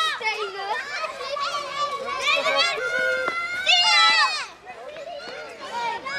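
Many children's voices shouting and calling out together, with long drawn-out high shouts in the middle, then quieter near the end.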